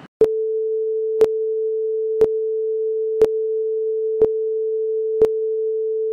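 Film-leader countdown sound effect: one steady beep tone held for about six seconds, with a sharp click every second. It starts abruptly just after the cut and stops suddenly at the end.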